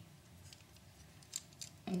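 Two small, sharp plastic clicks a little past halfway through, from LEGO minifigure parts being handled, over low room noise.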